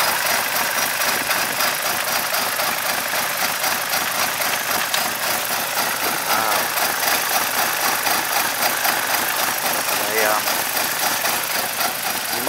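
BMW 318's four-cylinder engine running steadily with its oil filler cap off. Water fed into the engine has turned the oil into froth, which churns in the open filler neck.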